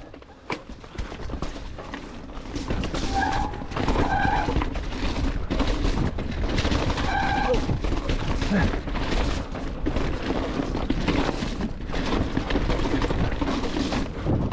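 Chromag Rootdown hardtail mountain bike rolling down a rough dirt trail, heard from a body-mounted action camera: steady tyre and trail noise with rapid rattling knocks from roots and rocks, and a few short tones. The rider says "oh" about two-thirds of the way in.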